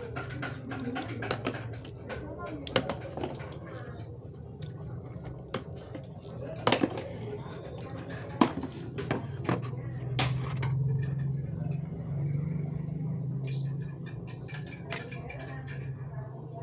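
Scattered sharp clinks and taps of a small fish net and utensils knocking against a metal basin, with small splashes of water. The loudest knocks come about two-fifths and half of the way in.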